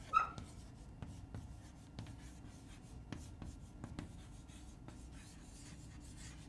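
Chalk writing on a chalkboard: faint scratching with light, irregular taps as the chalk strikes and drags across the board.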